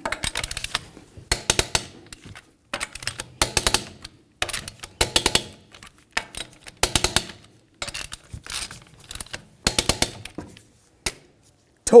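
Click-type torque wrench ratcheting in short bursts of sharp clicks as the wheel's lug nuts are tightened to 110 ft-lb, one nut after another in a crisscross pattern.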